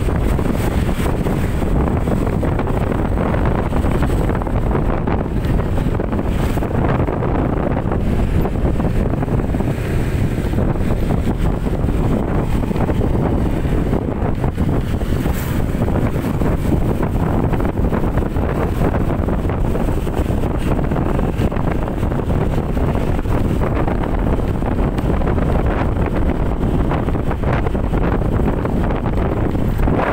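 Steady, loud wind buffeting the microphone of a motorcycle on the move, over the low rumble of the ride.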